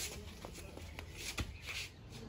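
Faint shuffling footsteps of flip-flops on a dirt yard, with a few light clicks and taps.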